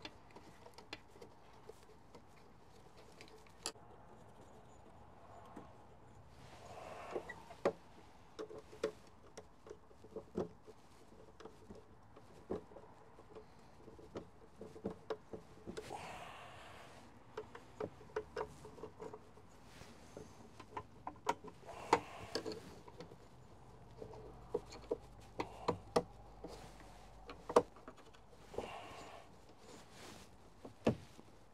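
Scattered light clicks and taps of hand work on a truck door's inner metal frame, with a few brief rustling scrapes, as a replacement window regulator is lined up with its bolt holes.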